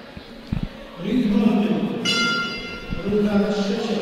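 Boxing ring bell struck once about two seconds in, ringing and fading over about a second: the signal that the third round has begun. A man's voice echoes in the hall underneath, announcing the round.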